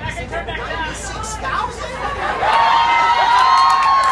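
Crowd chatter, then a melodica playing long held notes from about halfway through, with two notes sounding together near the end.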